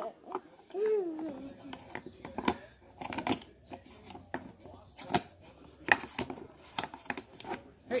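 Sharp wooden clicks and knocks, irregularly spaced about one or two a second, from the levers, ball and figures of a small wooden tabletop arena game being played, with a short vocal sound about a second in.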